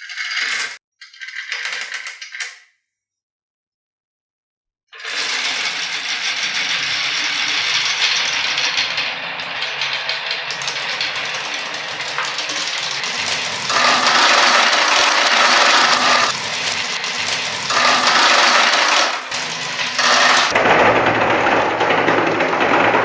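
Glass marbles rolling and clattering: two short bursts of clicking early on, then a gap, then from about five seconds in a dense, continuous rattle of many marbles rolling down wavy grooved wooden tracks, swelling louder in stretches toward the end.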